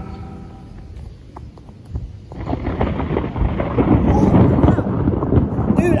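Thunderstorm noise: a few faint taps, then about two seconds in a loud, low, rough noise sets in and swells in gusts.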